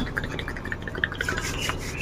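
Hands rubbing together close to the microphone: a dense, crackly rustle of skin sliding on skin, growing brighter and hissier about a second in.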